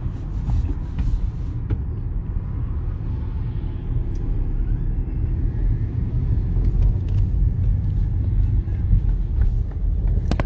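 Steady low rumble of a car's engine and tyres on the road, heard from inside the cabin while driving in town traffic.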